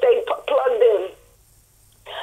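Only speech: a voice talking with a narrow, telephone-like sound, breaking off a little over a second in and leaving a short pause.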